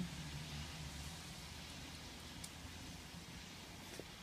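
Quiet background in a stopped car with the side window open: a faint steady low hum and hiss, the hum fading a little after the first second or two, with one faint tick.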